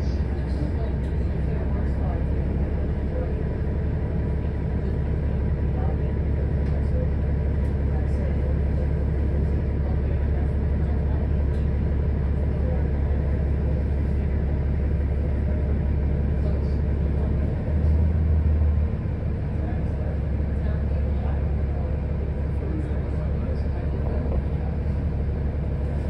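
City bus engine idling, heard from inside the passenger cabin: a steady low rumble, briefly louder about eighteen seconds in.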